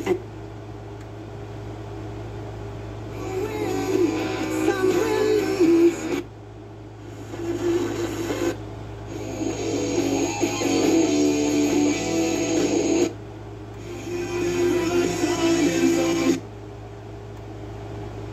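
Sony CFD-S50 boombox's FM radio being tuned through stations. Music plays through its speaker in three or four stretches separated by short quiet gaps where the tuner moves on. Each station swells up in volume after it locks on.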